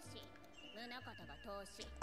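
Faint anime episode audio: quiet character dialogue over background music.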